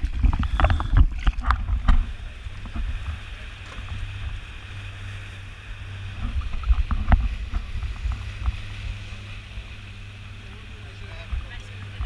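Knocks and thumps of divers and their kit clambering over the tube of a rigid inflatable boat, then the boat's outboard engine running with a steady low hum that gets stronger from about four seconds in, with a few more knocks around the middle.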